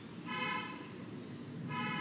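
Two short toots of a vehicle horn, faint, each about half a second long and steady in pitch, the second coming about a second and a half after the first.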